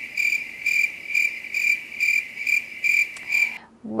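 Chirping crickets sound effect: a steady high trill pulsing about twice a second, cut off abruptly about three and a half seconds in. It is the comic 'crickets' cue for an awkward silence.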